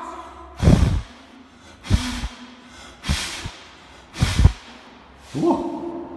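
A person blowing four hard puffs of breath about a second apart, each one buffeting the microphone like a gust of wind.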